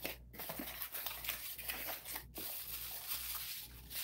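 Cardboard box flaps being pulled open and packing material rustling and crinkling as it is lifted out of the box, broken by two brief gaps.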